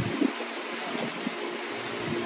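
Steady background hiss with faint, soft handling sounds as a small perfume bottle is slipped into a messenger bag.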